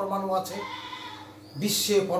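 A man's voice holding one drawn-out vowel, a hesitation sound, for about a second and a half as it fades. Speech resumes with a hissing syllable near the end.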